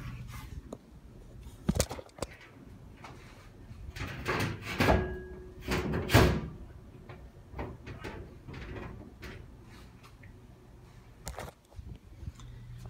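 Scattered knocks, clicks and scrapes of something being handled and moved, like a door or panel, with a sharp knock near the end.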